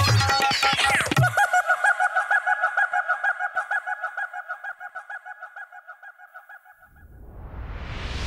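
Film soundtrack music cuts off with a falling sweep about a second in, leaving a rapidly pulsing two-pitch honk-like sound, about five pulses a second, that fades away over several seconds. A rising whoosh swells in near the end.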